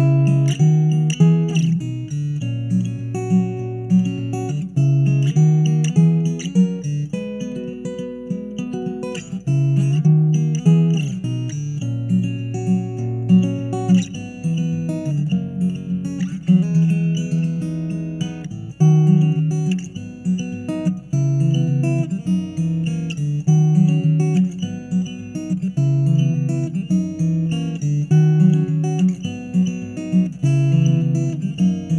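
Taylor Builders Edition K14ce acoustic-electric guitar played fingerstyle, heard through its pickup and an AER acoustic amplifier. It plays a continuous fingerpicked passage, with bass notes recurring under plucked melody notes.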